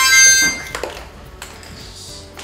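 A harmonica blown as one short chord of several notes together, lasting under a second before it fades. It is the class's quiet signal: children who hear it stop what they are doing and fall silent.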